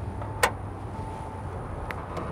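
A single sharp click about half a second in as the pickup's hood prop rod is unhooked, over a low steady background rumble.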